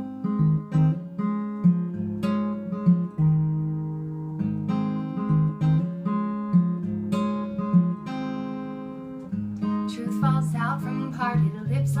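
Acoustic guitar playing the opening of a folk song, plucked notes and chords in a steady pattern. A woman's singing voice comes in about ten seconds in.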